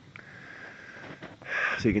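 A man's short breath in through the nose, a sniff, about one and a half seconds in, just before he speaks again; before it only a faint background.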